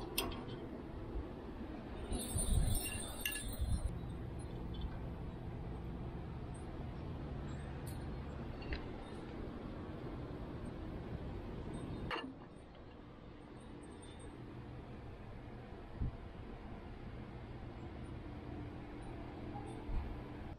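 Metal tongs clinking against a smoker's wire grates and a ceramic plate as smoked ribs are lifted out and set down: a few sharp clinks and taps over a steady low hum.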